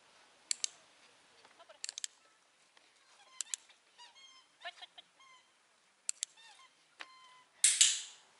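Sharp double clicks of a dog-training clicker, each a quick click-clack, heard four times. Short, high squeaky calls come between the later clicks, and a loud noisy rustle comes near the end.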